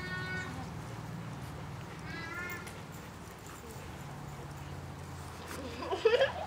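Bernese Mountain Dog puppy whining: a short high-pitched whine fading out just after the start and another about two seconds in, over a steady low hum.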